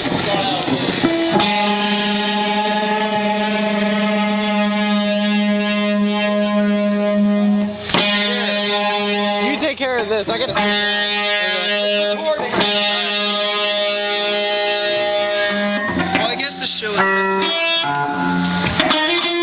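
Amplified electric guitar with distortion, holding one long sustained note for several seconds, then again after a short jumbled break about halfway through, with shorter changing notes near the end.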